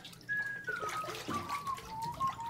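Running water trickling, with a high, pure whistle-like melody that slides down in slow steps over it.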